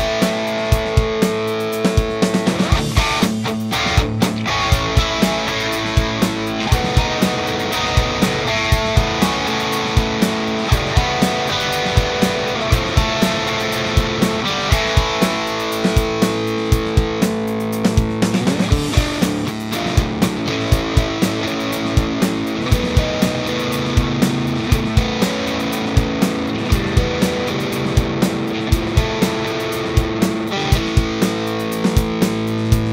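Mensinger Foreigner electric guitar played through heavy distortion: metal riffing with sharp, evenly spaced hits keeping a steady pulse.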